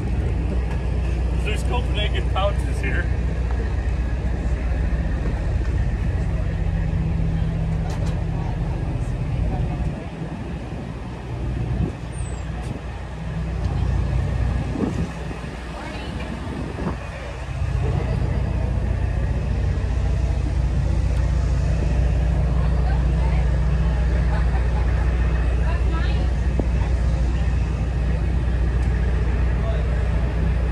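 An engine idling steadily, a low even hum that drops away for several seconds in the middle and then comes back.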